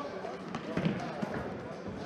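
A ball being kicked and bouncing on the hard floor of an echoing sports hall, with a louder strike a little under a second in, among players' indistinct shouting voices.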